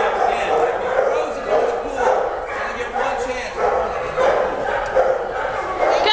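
A dog barking repeatedly, over a background of voices.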